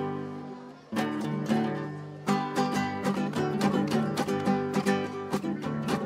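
Acoustic guitar played alone. A single strummed chord about a second in rings out, then from a little past two seconds comes a brisk run of strummed chords.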